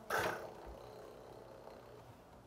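A person's short throat-clearing sound just after the start, fading within about half a second, then a quiet stretch.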